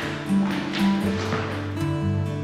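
Background music with held notes that change pitch every half second or so.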